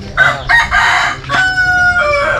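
A rooster crowing loudly once: a rough, ragged opening, then a long held note that sags slightly in pitch at the end.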